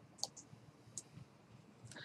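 Faint computer mouse clicks, about four short sharp clicks at irregular intervals, as the mouse works a web page's scrollbar.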